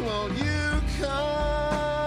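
A live worship band playing a slow song: drums, acoustic guitar, electric bass and keyboard. A long held, wavering note carries over the band from about a second in.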